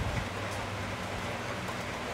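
Steady background noise in a pause between words: an even hiss with a faint low hum underneath.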